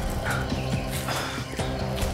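Background music score: low sustained tones with regular percussive hits about two a second.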